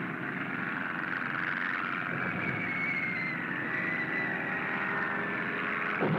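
Steady drone of a biplane bomber's engine, with a faint whistle gliding slowly down in pitch through the middle: a bomb falling toward the battleship. A louder rush begins right at the end.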